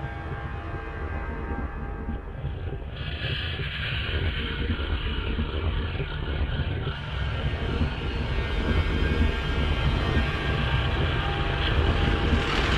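Album intro track from a technical brutal death metal record: a dark, rumbling ambient soundscape. A heavy low rumble with steady sustained tones above it grows slowly louder, and a brighter hiss joins about three seconds in.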